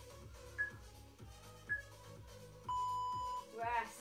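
Digital interval timer's countdown beeps: two short high beeps about a second apart, then one long lower beep marking the end of the work interval and the start of the rest. Background music with a steady beat runs underneath.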